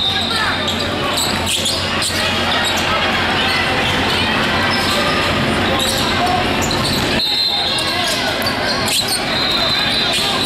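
Basketball gym during play: a basketball bouncing on the hardwood and sneakers moving on the court, under steady voices and crowd chatter that echo in the large hall. A thin, steady high tone sounds for the last few seconds.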